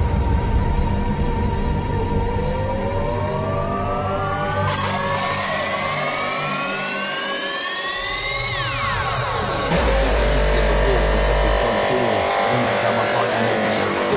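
Mainstream hardcore (gabber) dance music in a DJ mix. A rising sweep climbs steadily in pitch for about six seconds while the bass thins out, then falls sharply, and heavy bass comes back in.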